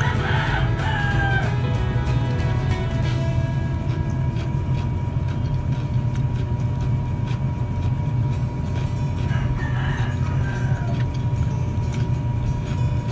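A rooster crowing twice, once at the start and again about ten seconds later, over a steady low hum.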